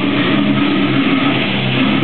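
Slam death metal band playing live and loud: low, downtuned distorted guitar chords held in long notes over a dense wash of noise.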